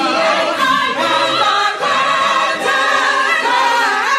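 Gospel choir singing in harmony, several voices sustaining and moving together.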